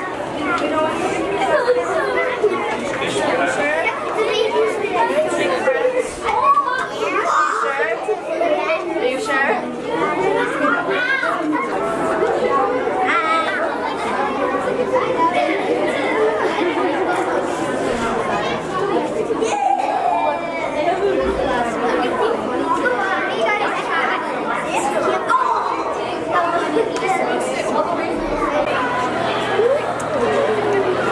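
A group of children chattering at once, many voices overlapping with no single voice standing out.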